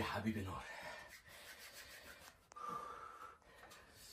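A man's short voiced exclamation right at the start, then soft breathing and gasps as he sits in the sauna's heat.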